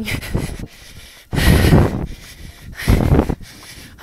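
A runner's heavy breathing: three noisy breaths hitting the microphone about a second and a half apart, the middle one loudest. She is out of breath from running up a gradual incline.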